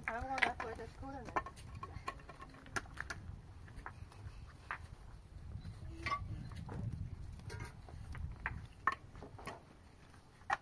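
Scattered sharp knocks, clinks and scrapes of hand masonry work: concrete blocks being set and mortar worked with a trowel in a metal basin. A voice calls out with a wavering pitch in the first second or so.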